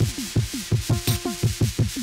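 Live electronic music played on hardware synthesizers and drum machines: a fast, busy rhythm of short percussive hits that each fall in pitch, over a few steady held tones and noisy texture.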